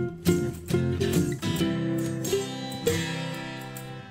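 Background music on plucked acoustic guitar: a run of picked notes, then a chord left to ring and fade over the second half.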